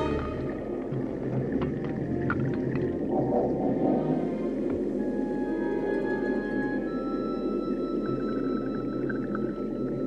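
Underwater film soundscape: a dense, steady churning of water and scuba bubbles, with scattered small clicks. The orchestral score drops away at the start, leaving only a few long, high held notes over the churning.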